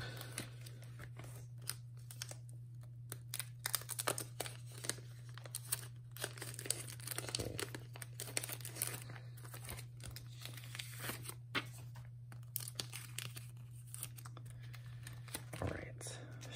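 Clear plastic binder pocket pages crinkling and rustling as photocards are slid out of and into the sleeves, with many small irregular crackles and clicks, over a steady low hum.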